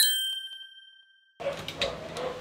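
A single bell-like ding, struck once and ringing with a clear pure tone that fades over about a second and a half before it cuts off abruptly: a logo sound effect. Faint room noise with a few light clicks follows near the end.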